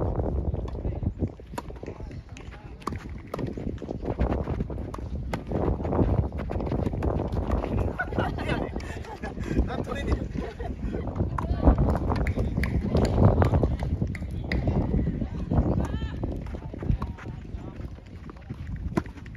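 A doubles tennis rally: repeated sharp racket-on-ball strikes and players' footsteps scuffing on a sand-dressed artificial-grass court, with a low rumble of wind on the microphone and a few short calls from the players.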